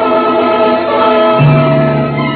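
Music of long held chords, with a deep bass note joining about one and a half seconds in.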